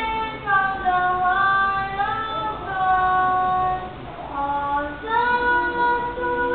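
Young voices singing a praise song into a microphone, in held notes about a second long that step up and down in pitch.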